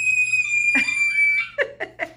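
A child's long, high-pitched squeal, held on one pitch and sliding slightly lower, stopping about three quarters of the way through. Another voice joins just before the middle, and short sharp bursts of laughing or coughing follow.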